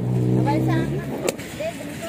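A brief low voice, then a single sharp click about a second and a half in as a clear plastic food-container lid is pulled open.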